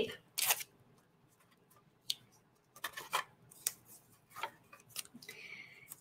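Low-tack purple masking tape being handled, torn off and pressed onto paper: a scatter of small, quiet clicks and crinkles, with a short rasping rub near the end as the tape is smoothed down.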